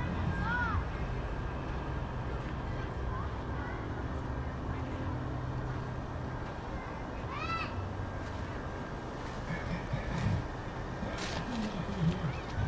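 A steady low hum and rumble, with two short, high rising-and-falling cries, about half a second in and again about seven and a half seconds in.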